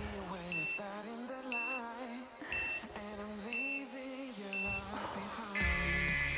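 Background pop music with a singing voice, over which a workout timer gives five short high countdown beeps about a second apart, then a louder, longer tone near the end as the interval runs out.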